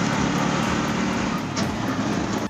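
Steady engine and road noise from inside a moving auto-rickshaw, with wind blowing across the microphone through the open sides.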